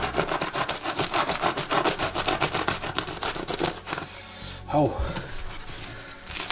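Serrated bread knife sawing through the crust of a crusty home-baked artisan loaf in quick back-and-forth strokes, dense scraping for about four seconds, then it stops.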